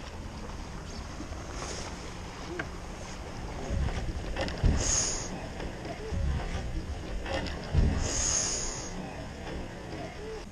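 Wind and small waves lapping around a kayak, a steady low rush of water. Two louder swishes come about five seconds and eight seconds in.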